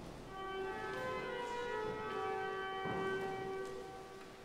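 Cathedral pipe organ playing a soft sustained chord, its notes entering one after another about half a second in and held until near the end, ahead of the choir's entry.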